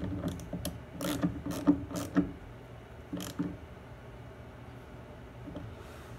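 Small hand ratchet clicking as the screws on a plastic intake airbox cover are tightened. Several irregular clicks come in the first three seconds or so, then they stop.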